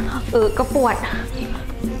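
A woman speaking over background music with a steady low bass.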